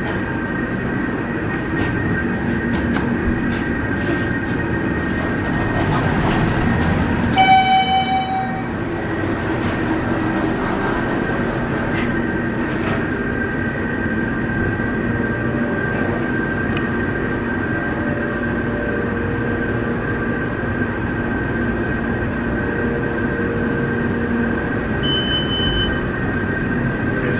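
Kone hydraulic elevator's pump motor running with a steady hum as the car rises one floor. A short electronic chime sounds about seven seconds in, and a brief high beep sounds near the end as the car reaches the floor.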